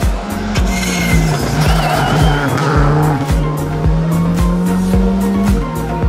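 Skoda Fabia R5 rally car sliding through a hairpin, its tyres squealing with a wavering high note for a second or two, about a second in. Background music with a steady beat plays over it.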